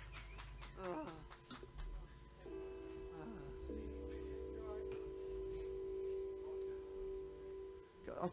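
Quiet instrument sounds between songs at a live rock gig: a few bending guitar notes, then a steady held chord that starts about two and a half seconds in and sustains until the end.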